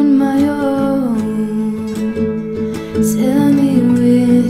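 Acoustic guitar strummed steadily under a woman's singing voice holding long notes, the pitch stepping down about a second in and rising again near the end.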